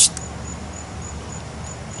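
An insect chirping in short, high-pitched pulses about three a second, over a steady low background rumble.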